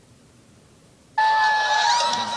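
Audio of a live rock concert video playing loudly from an iPad's speaker, starting suddenly about a second in with steady held tones.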